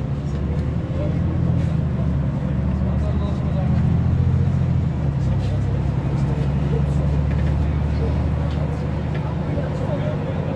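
A bus engine running as the bus drives, heard from inside the passenger cabin, its low drone rising and falling in pitch with the bus's speed.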